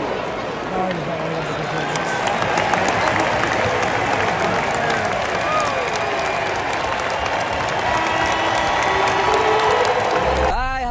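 Hockey arena crowd during play: a steady din of many voices, with applause and some cheering, and occasional sharp clicks.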